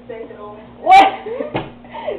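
Quiet talking, then a loud short shout or cry from a girl about a second in, followed by a single sharp knock. A steady low hum runs underneath.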